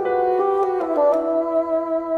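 Bassoon and piano playing a classical chamber piece: sustained woodwind notes over piano, the notes shifting about a second in.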